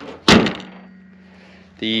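Toyota Prado 150's bonnet slammed shut: one loud thud about a third of a second in, with a short ring after it.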